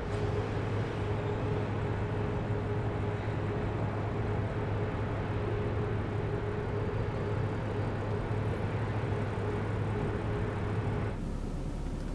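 An Audi car creeping forward at walking pace, a steady low engine drone with a faint steady tone above it. Near the end it gives way to a thinner rumble.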